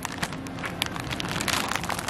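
A clear plastic bag crinkling and rustling in the hand as a bagged bundle of 7-inch records is pulled from a record bin, a run of small irregular crackles.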